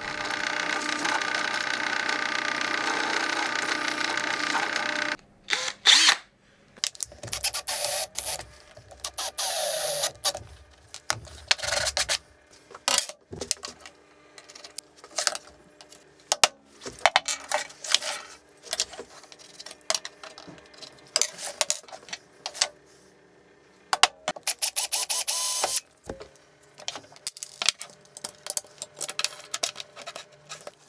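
A power drill runs steadily for about five seconds, then stops. After it come many short clicks, knocks and scrapes of small wooden blocks, screws and insert nuts being handled on a metal sheet and worktop, with a second brief burst of machine noise a few seconds before the end.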